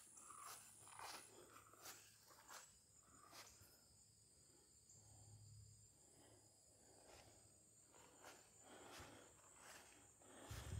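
Near silence: a few faint, irregular footsteps in grass, with faint, steady, high insect calls behind them.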